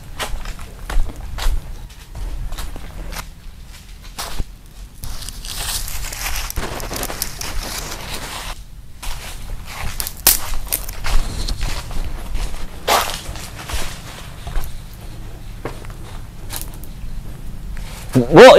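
Scuffling on a tiled floor: shoes shuffling and scraping, with scattered knocks and thuds.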